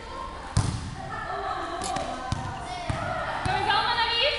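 A volleyball smacking against hands and the hard floor of a large sports hall: about five sharp, echoing hits, the loudest about half a second in. Children's voices can be heard alongside.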